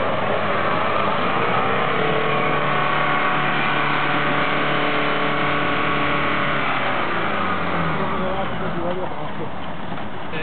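Jeep Wrangler Rubicon's engine held at raised revs under load as the 4x4 works through a deep muddy rut off-road, then the revs falling away about seven seconds in.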